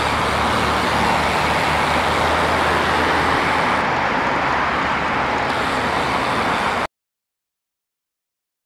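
Steady rush of wind on the microphone from riding a road bike, with a low hum of road traffic underneath. The sound cuts off suddenly about seven seconds in.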